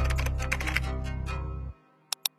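Rapid computer-keyboard typing clicks over background music. The music fades and cuts off suddenly near the end.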